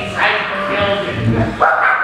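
A performer's loud wordless vocal cries in several short bursts, with the loudest starting about one and a half seconds in.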